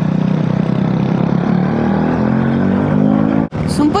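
Motorcycle engine running while riding, its pitch climbing as it speeds up through the second half; the sound cuts off suddenly about three and a half seconds in.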